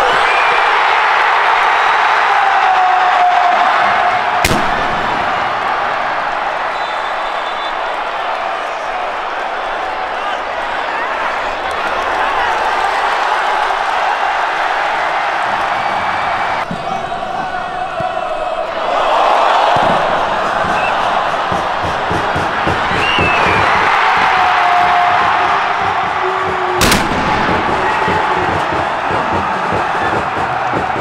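Football stadium crowd cheering and shouting in celebration of a goal. Two sharp bangs come through, one about four seconds in and one near the end.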